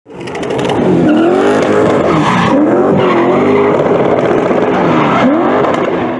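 Car engine revving hard with squealing tyres, as in a burnout. The engine's pitch swings up and down several times over a steady rush of tyre noise.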